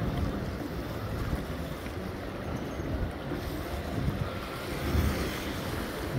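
Wind rumbling on the phone's microphone over the steady wash of sea water against the rocks of a breakwater.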